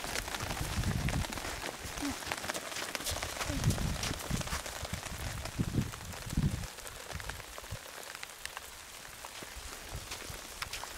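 Wind gusting on the microphone in several low rumbles through the first two thirds, over a steady hiss scattered with light ticks.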